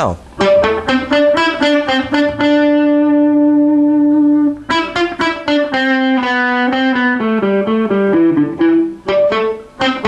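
Electric guitar improvising a lead line in the A minor scale, mixing short, sharp notes cut off by releasing fret-hand pressure with smooth, held ones. A few quick choppy notes open it, one long sustained note rings for about two seconds, then a run of notes follows.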